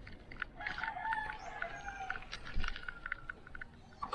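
A rooster crowing once, a single call lasting under two seconds, over light, evenly spaced clicks.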